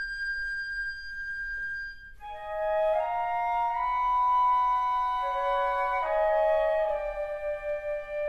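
A flute ensemble of piccolo, concert flutes, alto flutes, bass flutes and contrabass flute playing live: a single high note is held alone, then about two seconds in the other flutes come in with a full chord of held notes. The chord steps to new notes a few times, most clearly about six seconds in.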